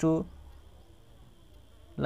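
A man's voice says one short word, then a faint steady low hum with a thin high whine under it.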